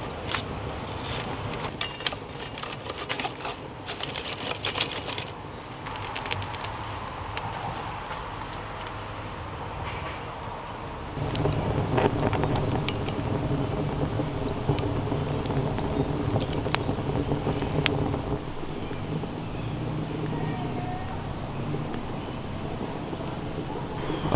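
Wood fire crackling in a rocket stove's firebox, with sharp snaps and clicks, and sticks clattering as they are stacked in during the first few seconds. About eleven seconds in, a steady low drone joins and lasts about seven seconds before easing off.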